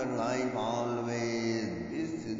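A male voice chanting in long held notes, the pitch dropping lower near the end.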